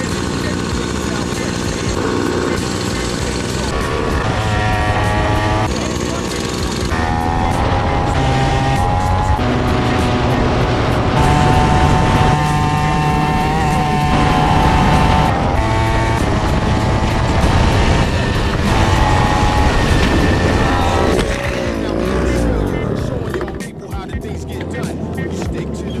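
Kid kart's small two-stroke Comer engine racing at high revs, its note rising and falling as it goes round the track, with music also playing. Near the end the engine note drops away and there are scattered knocks and scrapes as the kart rolls over into the dirt.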